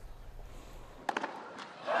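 A low hum for about a second, then a few sharp knocks, and near the end a crowd starting to cheer loudly.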